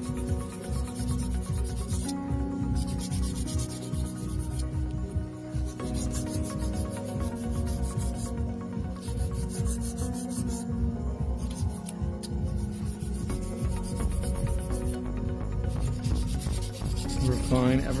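Hand nail file rasping back and forth across a sculpted coffin-shaped artificial nail in rapid strokes, stopping briefly a few times, over soft background music.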